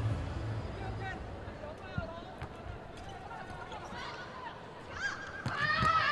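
Athletic shoes squeaking in short, scattered chirps on an indoor volleyball court during a rally, with a single sharp hit of the ball about two seconds in. Arena crowd noise swells near the end.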